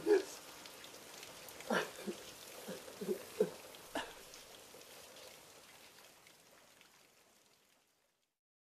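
A young man sobbing and laughing at once, in short choked gasps over the first four seconds, over a steady hiss of rain; everything fades away near the end.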